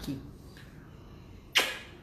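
A short, sharp intake of breath close to the microphone about one and a half seconds in, over quiet room tone.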